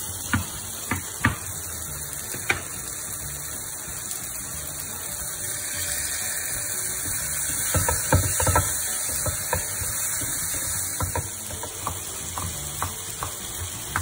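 Knife strokes on a wooden cutting board as mint leaves are chopped, then onion-tomato masala sizzling in a frying pan with a spatula scraping and knocking through it around the middle, and a few more knife taps near the end.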